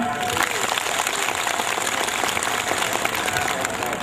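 Audience applauding: a dense, steady clatter of many hands clapping that eases slightly toward the end.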